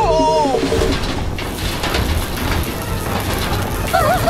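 Cartoon sound effect of an electrified power line crackling and buzzing, as a steady noisy sizzle with a low hum, over background music.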